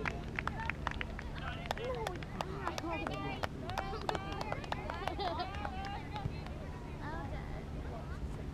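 Scattered distant voices of youth soccer players and sideline spectators calling across an open field, none close enough to make out, over a steady low rumble, with a number of short, sharp taps mixed in.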